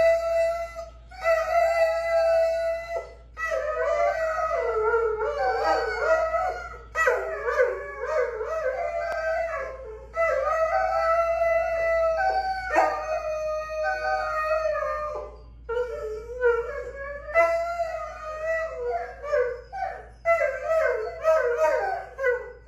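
Two dogs howling together in long, drawn-out howls broken by short pauses every few seconds, one voice holding a steady pitch while the other wavers up and down around it.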